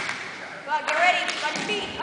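Voices of players and spectators calling out in a gymnasium, with a sharp knock about a second in.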